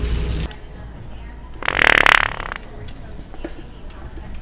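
One loud, wet fart sound about a second long, about halfway through, played by the original Sharter remote-controlled fart-noise device.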